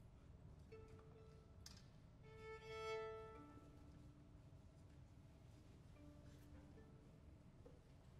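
A few soft, isolated bowed string notes over near silence: a short note, a louder held note about two to three seconds in, then a lower held note, with faint short notes near the end.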